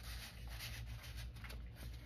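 Faint paper rustling and rubbing: a waxed-paper card being slid into a waxed envelope pocket and hands brushing over the journal pages, over a low steady hum.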